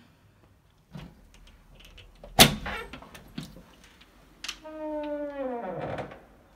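Apartment front door being opened: a loud sharp click from the lock or latch, a few lighter clicks, then a long squeak that slides down in pitch as the door swings open.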